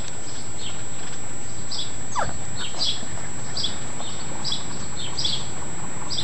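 A Newfoundland puppy gives one short, falling yelp about two seconds in. Faint high chirps repeat roughly once a second throughout.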